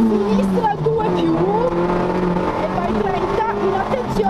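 Peugeot 106 Group N rally car's four-cylinder engine running hard, heard from inside the cabin. Its pitch drops about a second in and climbs again past three seconds, with the co-driver's voice calling pace notes over it.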